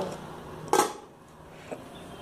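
A single short knock of a utensil against an aluminium saucepan about a second in, then a fainter tick near the end, over a quiet kitchen background.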